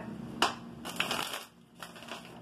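A tarot deck being shuffled by hand: a papery rustle broken by a few sharp snaps of the cards.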